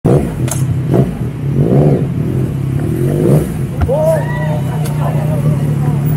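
A motorcycle engine idling steadily, with people talking nearby.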